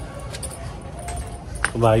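Steady outdoor street background noise with a few sharp light clicks. A man's voice starts speaking near the end.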